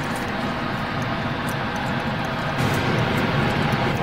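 Steady engine drone with a low hum.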